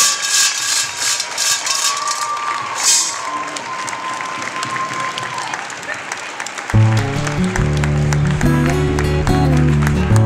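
Audience applauding in a gym, the clapping thinning out over several seconds. About seven seconds in, background music with a strong bass line and guitar starts abruptly.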